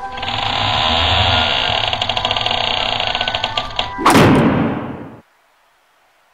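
Sound effect of a sliding door rattling along its track for about four seconds, then slamming shut with a loud bang that dies away quickly.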